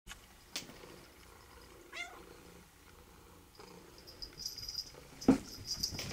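A house cat gives one short meow that rises in pitch, about two seconds in. A little after five seconds comes a sharp thump, the loudest sound, followed by a few lighter knocks.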